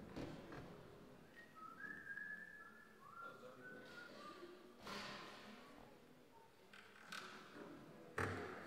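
A person faintly whistling a short run of sliding notes over quiet room tone, with a few soft knocks from equipment being handled.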